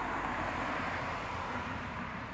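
Steady background noise in a pause in speech: an even hiss with a low rumble, like that of distant traffic.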